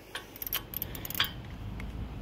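Several sharp metallic clicks and clinks as a torque wrench and its bit are fitted onto a brake caliper carrier bolt.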